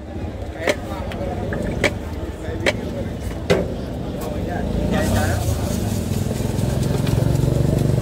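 Street traffic rumble, with a motor vehicle growing louder over the last three seconds. A few sharp clicks or knocks come about a second apart in the first half, over background voices.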